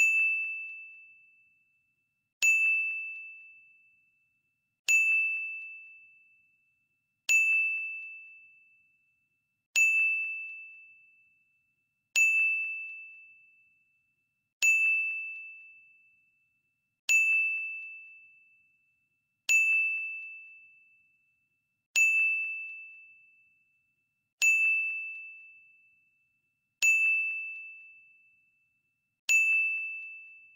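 Quiz countdown timer ding: one clear, high, bell-like tone struck about every two and a half seconds as the timer counts down. Each strike starts sharply and fades away before the next.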